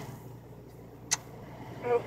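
Low, steady background hum inside a car cabin, with one sharp click about a second in. A woman's voice starts speaking near the end.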